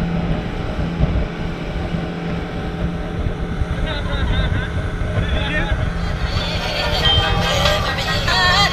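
Motorboat engine running at speed, a steady low drone mixed with wind buffeting the microphone. Laughter comes in about halfway through.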